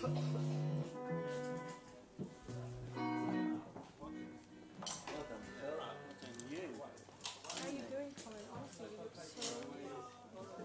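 A few sustained plucked guitar notes ringing out in the first few seconds, followed by quiet talk in the room and a few light clicks.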